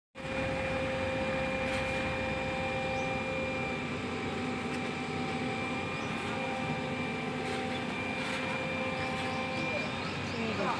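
Backhoe loader's diesel engine running steadily, with a constant whine held over it, as the machine holds a concrete culvert pipe on lifting straps.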